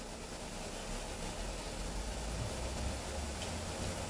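Room tone with no speech: a steady hiss with a low rumble that swells a little in the middle.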